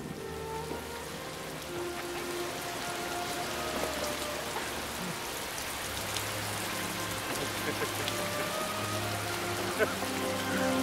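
Heavy rain pouring onto lake water, a dense steady hiss that grows slightly louder, with music of long held notes underneath.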